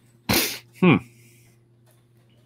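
A man's sharp, noisy burst of breath, followed a moment later by a short falling "hmm".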